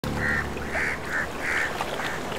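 A bird calling four times in short calls over a steady wash of sea surf.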